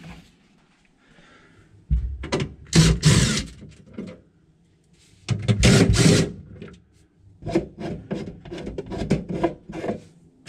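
Cordless drill-driver backing screws out of a refrigerator's plastic freezer liner panel, in two short noisy runs about three and six seconds in. A string of light clicks and knocks from the plastic parts being handled follows.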